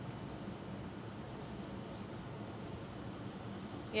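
Torn bread pieces sizzling steadily in hot oil in a stainless steel skillet.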